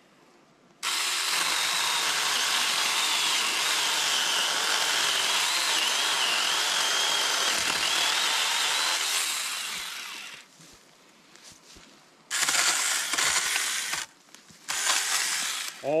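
Saker cordless mini chainsaw running: its small electric motor starts abruptly about a second in with a high, wavering whine and chain noise, runs for about nine seconds and winds down. Two shorter bursts of the trigger follow near the end.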